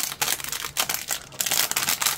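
Thin clear plastic bag crinkling as it is handled between the fingers: a continuous run of irregular crackles.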